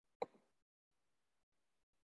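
Near silence, broken once by a brief pop about a quarter of a second in.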